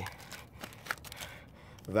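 Faint handling noise, with a single brief click about a second in.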